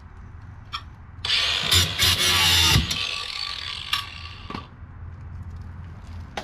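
Rusted sheet steel from an RV basement box scraping harshly for about a second and a half, ending in a thud, followed by a faint metallic ring and a sharp click.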